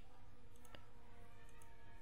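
A single computer mouse click about a third of the way in, over a faint steady background hum.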